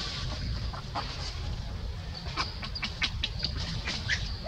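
An animal's short, sharp calls: a few in the first second, then a quick run of them in the second half, over a steady low rumble.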